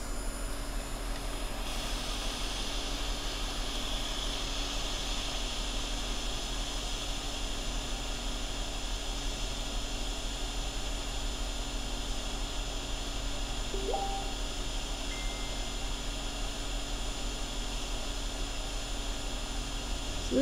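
Hot air rework station blowing steadily while solder and underfill are cleaned from under a removed chip, a continuous airy hiss over a low electrical hum.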